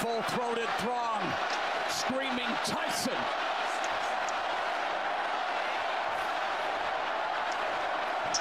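Steady crowd noise of a boxing arena heard through the fight broadcast, with a voice talking over it for the first three seconds or so and a few faint sharp clicks.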